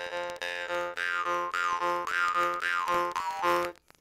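Jaw harp droning on one low note, plucked in a steady rhythm while the player breathes twice per pluck, so the tone swells in regular pulses and a whistling overtone glides up and down. It stops near the end.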